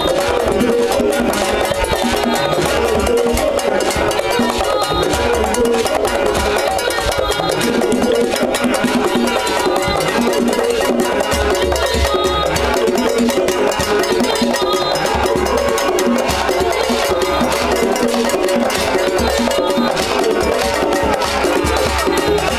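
Live Afro-Cuban percussion ensemble: several conga drums played by hand in an interlocking rhythm, with a cajón and beaded gourd shakers (chekerés), and voices singing over the drums.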